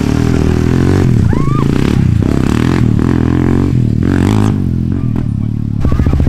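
Single-cylinder sport ATV engine running and revving up and down as the quad is ridden on its back wheels.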